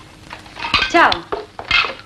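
Dishes and cutlery clinking in a restaurant dining room, a few sharp clinks.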